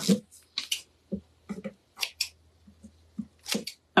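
Scissors cutting decoupage paper: short crisp snips, coming in pairs about a second and a half apart.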